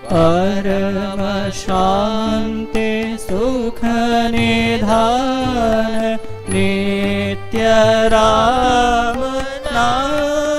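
A male voice singing a Hindi devotional song (bhajan) in Indian classical style, with harmonium accompaniment. He sings long, ornamented notes in phrases of a second or two, with brief breaks between them.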